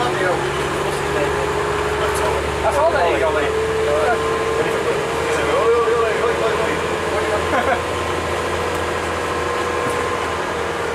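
Engine and drivetrain of a single-deck bus, heard from inside the passenger saloon while underway, with a steady whine that rises slowly in pitch as the bus gathers speed over a low engine rumble. Passengers talk in the background.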